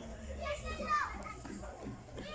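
Children's voices at play, calling out, with one high voice sliding down in pitch about a second in.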